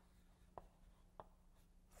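Near silence with a faint steady hum and two faint taps about half a second apart, the sound of chalk touching a blackboard.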